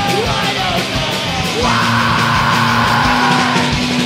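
Live punk rock band playing an instrumental passage: distorted electric guitar, drum kit with cymbals, and a bowed cello. A strong, rough, held sound comes in sharply a little under halfway through and fades near the end.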